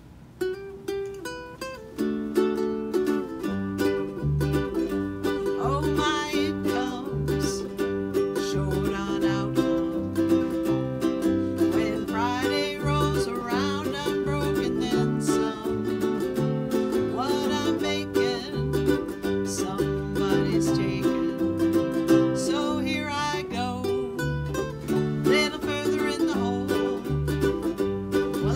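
Small ukulele band playing a folk-blues song: strummed ukuleles over a plucked bass line, with singing, the full band coming in about two seconds in.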